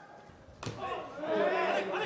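Nearly quiet for about half a second, then a man's voice speaking from about half a second in.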